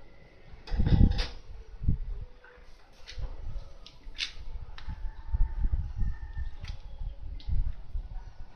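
Irregular clicks and knocks with low thumps, the loudest cluster about a second in, then scattered lighter ones: handling noise at a workbench.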